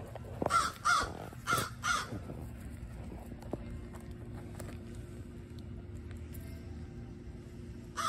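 Four short, harsh calls in two quick pairs within the first two seconds, over a faint steady low hum.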